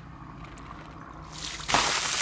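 A bucketful of ice water poured over a person's head: faint sloshing as the plastic bucket is lifted, then, near the end, a sudden loud rush of water splashing down.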